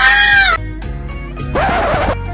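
A woman screaming in fright: one long scream that falls away about half a second in, then a second, rougher scream near the end, over background music.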